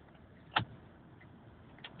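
Quiet car interior with a faint steady hiss, broken by a single sharp click about half a second in and a couple of faint ticks near the end.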